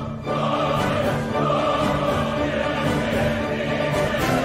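Opera chorus and orchestra performing, the choir singing long held chords, with a brief break just after the start.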